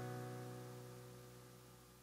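The last guitar chord of a pop-punk song ringing out and fading away, dying into silence about a second in.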